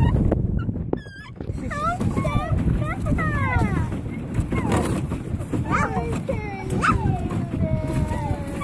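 A child's voice making wordless sliding calls and hums, ending in one long falling tone, over a low wind rumble on the microphone.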